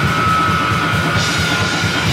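Live deathgrind band playing at full volume: dense, fast drumming under distorted guitar and bass, with a high held note over the top that stops near the end.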